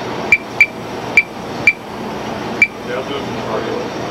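Five sharp clicks, each with a short high-pitched ring, unevenly spaced over the first two and a half seconds, over a steady murmur of voices.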